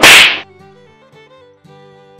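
A single loud whack, a comic hit sound effect for a stick blow, lasting about half a second at the start, over light background music.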